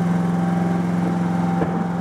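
Generator engine running steadily, a loud continuous hum, with one light click near the end.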